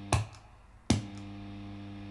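Steady electrical hum with a stack of overtones from a tube preamp guitar pedal powered by a Zoom adapter, the noise that this adapter causes. A sharp click cuts the hum off just after the start, and a second click a little under a second in brings it back.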